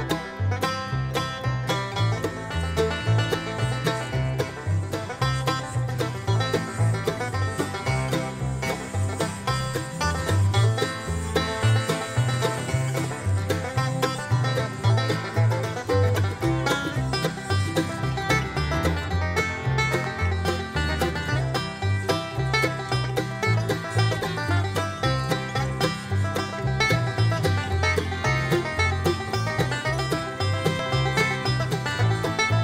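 Background music in a bluegrass or country style, with plucked strings and a bouncing bass line running steadily.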